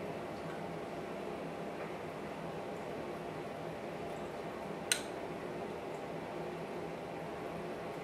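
Steady low room hum with one sharp, brief click about five seconds in.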